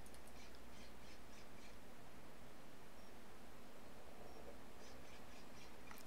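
Low, steady background hiss of a recording room, with a couple of faint, short high-pitched bird chirps from outside about halfway through.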